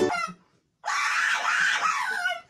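A small dog screaming in one long, wavering cry that starts about a second in, out of fear while held for a vet examination. Just before it, a ukulele tune cuts off.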